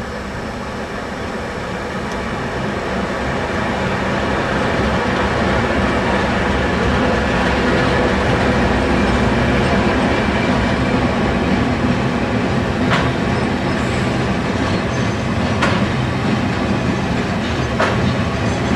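A freight train hauled by three 48 class diesel-electric locomotives passing, their engines running as they go by and the rumble building over the first few seconds. It is followed by loaded grain hopper wagons rolling steadily past, with a few sharp wheel clicks over the rail joints near the end.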